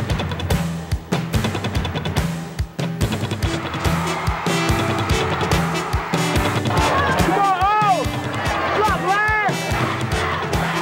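Background music with a steady beat and bass line. From about seven seconds in, a melody line glides up and down over it.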